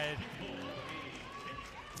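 Basketball court sound during live play: players' footwork on the hardwood and faint voices calling out on the court, with short high glides like shoe squeaks.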